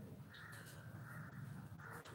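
Quiet room tone with a faint distant bird call running through the pause.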